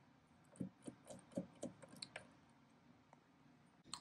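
A quick run of faint metallic clicks from the mechanism of a 1910 Austria Model V mechanical calculator as it is handled, about half a second to two seconds in.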